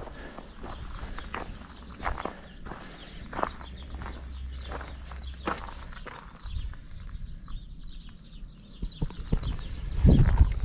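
Footsteps crunching on a gravel path, irregular steps.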